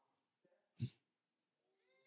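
Near silence, broken by one short puff of sound about a second in and a faint, drawn-out, pitched vocal sound near the end.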